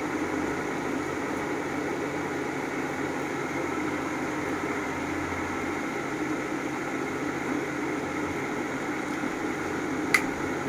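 Steady hum and whir of a running machine, such as an electric appliance motor, with a lower hum that fades about six seconds in.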